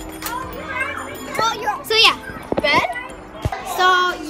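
A group of children talking and calling out in high voices, with a few short gliding squeals in the middle and a couple of soft knocks.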